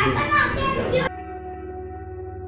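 Room chatter with children's voices, cut off suddenly about a second in and replaced by background music of held, ringing tones.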